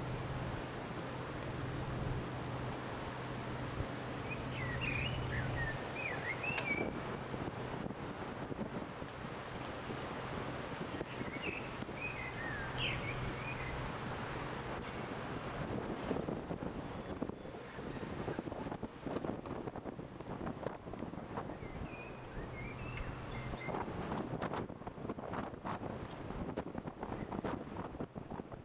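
Wind on the microphone over the low, steady hum of a canal tour boat's engine. A few short bird chirps come through about five, twelve and twenty-three seconds in.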